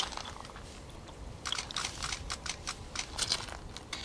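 Irregular rustling and crackling, quieter at first, then a run of sharp clicks from about a second and a half in.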